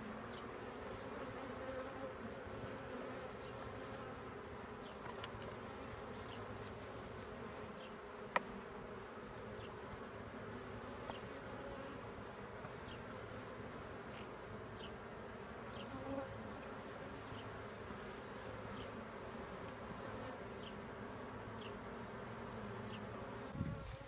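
Honeybees buzzing in a steady, continuous hum around an opened hive as its brood frames are lifted out, with one sharp click about eight seconds in.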